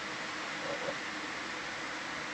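Steady hiss of background noise, with a faint, brief sound a little under a second in.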